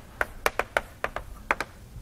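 Chalk tapping against a blackboard while writing: a series of sharp, irregular taps and clicks.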